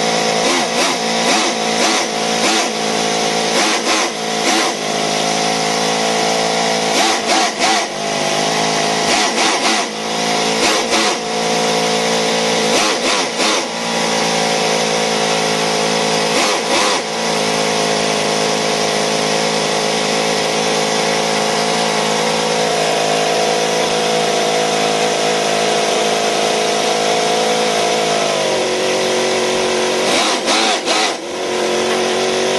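Miniature V8 model engine running at high speed, its pitch wavering up and down with a few brief stumbles in the first half, then holding steadier, and dropping to a lower speed near the end.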